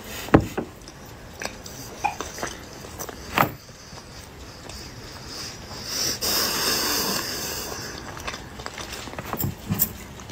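Close mouth sounds of a person chewing a mouthful of food: a few wet clicks and smacks in the first seconds, then a long breath out through the nose from about six to eight seconds in.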